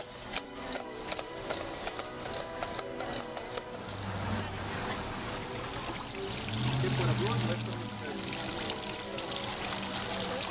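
Horse hooves clip-clopping on pavement for the first few seconds. Then a fountain's splashing water comes up, with background music throughout and a low hum swelling twice in the middle.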